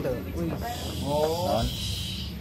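A person's voice making a drawn-out wordless sound, about a second long.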